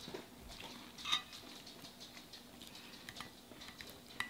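Faint, crackly eating sounds: soft crunching, mouth smacks and fingers handling crisp fried food, with one sharper click about a second in.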